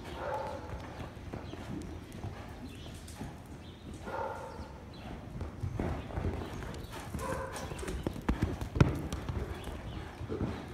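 Horse cantering loose on the deep sand of an indoor arena: dull, irregular hoofbeats that get heavier from about six seconds in, with one loud thud near the end.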